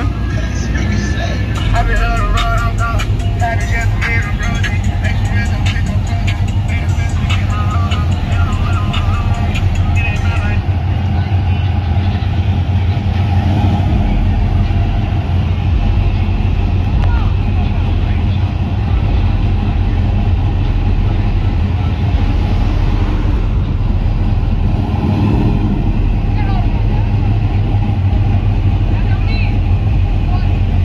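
Car engines running, mixed with music and people talking, under a steady deep rumble. Voices are most prominent in roughly the first ten seconds.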